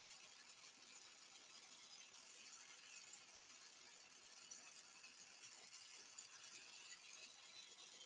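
Near silence: a faint, steady hiss with no distinct events.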